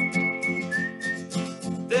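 Acoustic guitar strummed in a steady rhythm between sung lines, with a whistled note held over the strumming and then a shorter, slightly lower whistled note about a second in.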